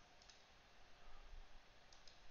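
Near silence: faint room tone with a couple of faint computer mouse clicks, one shortly after the start and one near the end.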